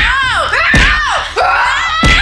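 Children shrieking and squealing in high, rising-and-falling cries during a pillow fight, with a few dull thumps of pillows landing about a second apart.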